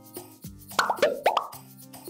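Background music with a quick run of bubbly plop sound effects, a few pitch-sweeping pops in a row, about a second in.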